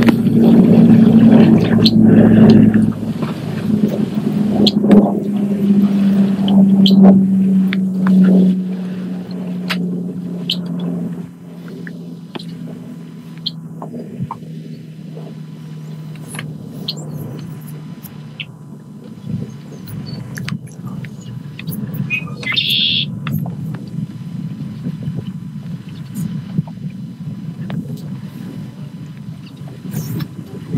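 Audio of a video of a river whirlpool played in the room: a low rumbling drone that slowly sinks in pitch, loud for the first ten seconds or so and then weaker. A short higher sound comes about two-thirds of the way through.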